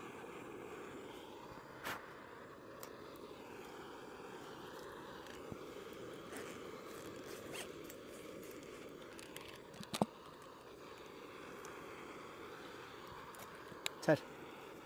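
Backpack zip being undone and the pack rummaged through, with a few sharp clicks and knocks of gear being handled, over the steady hiss of a canister gas stove heating water.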